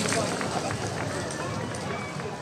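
Footsteps of a group of dancers hurrying off across a stage floor, with voices talking around them, fading out.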